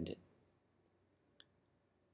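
Near silence: room tone, broken by two faint, short clicks a fraction of a second apart, just past the middle.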